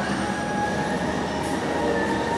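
Steady background din of a busy indoor space, with faint pitched traces running through it.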